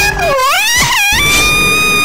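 High-pitched, sped-up cartoon voice wailing without words: a wavering cry that dips and rises in pitch in the first second, then a long held high note. It is the cry of a talking chili pepper character as it is sliced with a knife.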